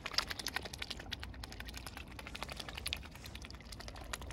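Mute swan and cygnets feeding on seeds at the water's edge, their bills dabbling and snapping in shallow water: a rapid, irregular run of small clicks.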